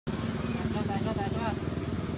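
A steady low engine rumble, with a few short high chirps around the middle.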